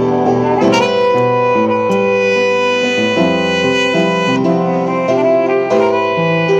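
Two trumpets and an upright piano playing jazz together: the trumpets play long held notes that shift in pitch every second or so, over piano chords.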